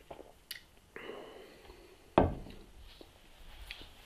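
A beer glass set down on a wooden table: a single knock about two seconds in, with a few fainter small sounds before it.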